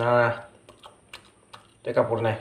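A man's voice for about half a second, then a quiet stretch with four or five faint sharp clicks, and his voice starting again at the very end.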